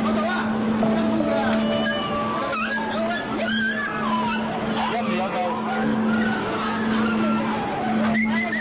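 Animals squealing and crying out in many short, overlapping high calls, over a steady low machine hum.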